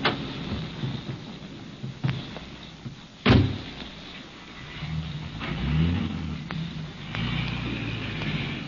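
Radio-drama sound effects of getting into a car: a few clicks, a car door slamming shut about three seconds in, then a car engine starting up and running with an uneven low rumble.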